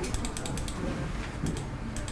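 A quick run of small mechanical clicks, ratchet-like, in the first half-second or so, then a couple of single clicks near the end.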